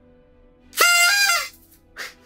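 A small handheld horn honks once, loud, for under a second. Its pitch steps up partway through and drops as it ends.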